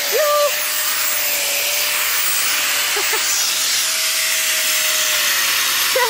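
Handheld concrete grinder with a dust shroud grinding a concrete stair step: a steady high squealing whine over a harsh scraping hiss. The whine fades out shortly before the end.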